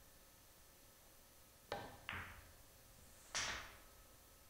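Pool balls clacking after a quiet pause: the cue tip strikes the cue ball, then the cue ball hits the object ball about half a second later, and a louder, brighter clack of ball on ball comes a little over a second after that.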